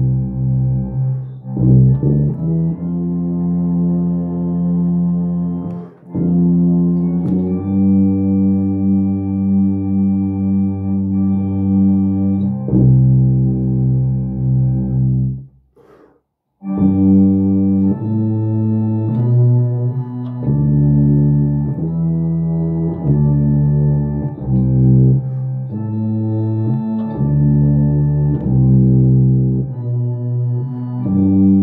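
Four-valve tuba playing a slow hymn line in the middle register, a string of long held low notes changing about once a second. It drops out for about a second near the middle, then carries on.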